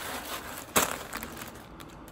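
Clear plastic packaging bag crinkling as it is handled, with one loud sharp crackle a little under a second in and smaller rustles after it.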